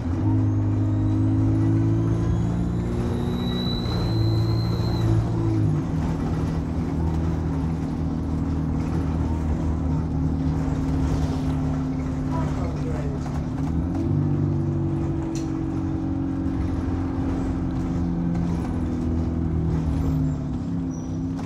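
Diesel bus engine running under way, heard from inside the passenger saloon. A thin, high turbocharger whine rises in pitch during the first five seconds; this turbo scream is what the bus is known for. The engine note shifts about six seconds in and again about fourteen seconds in.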